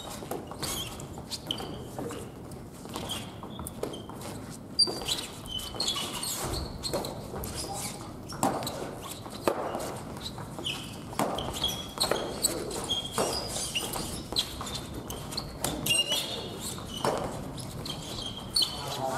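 Badminton rackets striking a shuttlecock in rallies, sharp hits about once a second, with short high squeaks of sports shoes on a wooden gym floor.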